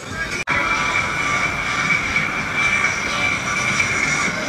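A steady mechanical drone with a constant high whine, starting abruptly after a short gap about half a second in.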